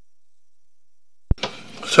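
Silence, then a single sharp click about a second and a quarter in, followed by faint rustling as a man starts to speak.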